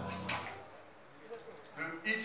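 A man's voice over a microphone and PA in a large hall trails off, then a short pause of quiet room noise with a faint click or two, and speech starts again near the end.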